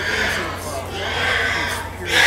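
Pigs squealing twice, with a low murmur of crowd chatter.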